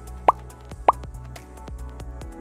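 Quiet background music with two short rising pop sound effects, about 0.6 s apart, used as editing accents while on-screen text appears.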